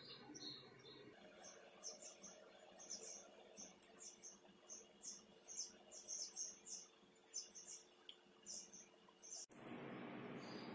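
Faint chirping of small birds, a few short high chirps a second, over a low steady hum. About nine and a half seconds in, this gives way to an even hiss.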